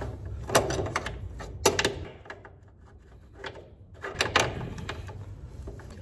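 Sharp metallic clicks and knocks of a socket, extension bar and wrench working a bolt on the underside of a car: several in the first two seconds, then a quieter spell, then two more about four seconds in.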